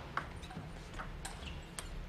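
A few faint, irregular light clicks over quiet hall ambience, between table tennis rallies.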